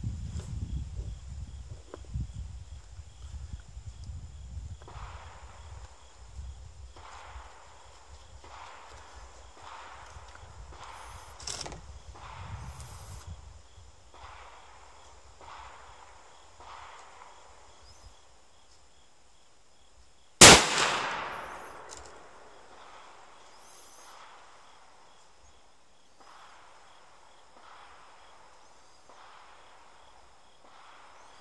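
A single shot from an ATA ALR bolt-action rifle in .308, a sharp crack about two-thirds of the way in with an echo dying away over a second or so. Wind rumbles on the microphone in the first few seconds.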